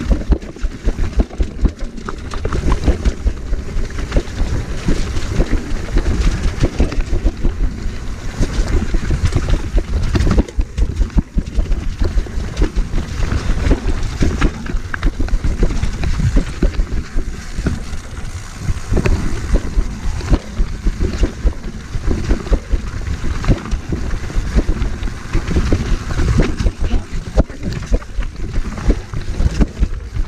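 Mountain bike riding fast down a rough forest trail: wind buffeting the microphone, with tyres on dirt and stones and the bike rattling over a constant run of small jolts.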